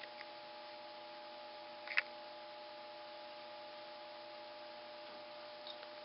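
Desktop computer running at its BIOS screen: a faint, steady hum with a few steady tones, and a single sharp click about two seconds in.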